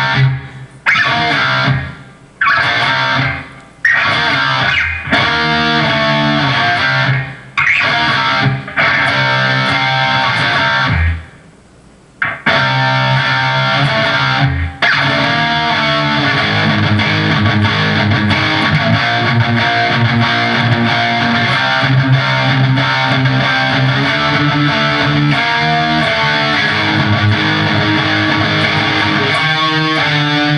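Electric guitar played through an amp, picking out a power-chord rhythm riff. It stops and restarts several times in the first half, then runs on unbroken through the second half.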